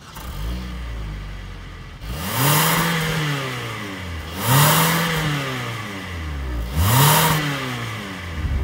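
The 2021 Hyundai Tucson's 2.4-litre four-cylinder engine heard from its exhaust. It starts up just after the beginning, settles to idle, then is revved three times, each rev rising and falling back within about a second and a half.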